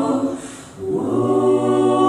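Mixed-voice a cappella group singing sustained chords into microphones. The chord fades away about half a second in and, after a brief dip, a new chord with a low bass note enters about a second in.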